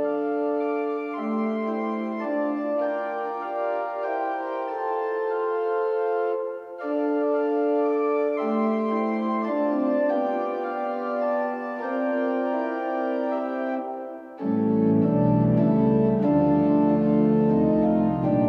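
Three-manual organ playing held chords that change about once a second, with two short breaks, after about seven and about fourteen seconds. After the second break, deep pedal bass comes in and the sound turns louder and fuller.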